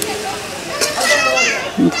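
High-pitched children's voices chattering in the background, over a metal spatula stirring and scraping cauliflower around a metal wok.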